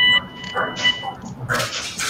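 A steady electronic tone, loudest at the very start and fading away about a second in, followed by faint breathy murmurs.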